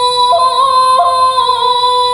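A young woman's voice chanting shigin (Japanese recitation of a classical Chinese poem), holding one long sustained note with small wavering ornaments.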